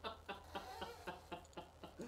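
Soft, quiet laughter: a string of short chuckles, about five a second.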